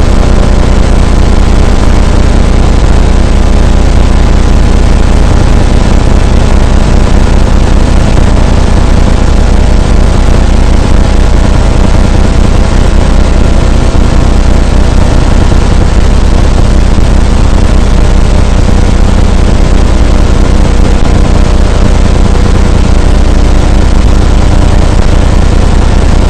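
Loud, steady engine and wind rumble recorded from a moving vehicle, distorted and unchanging throughout.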